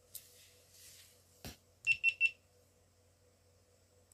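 A single click, then three short, high electronic beeps in quick succession.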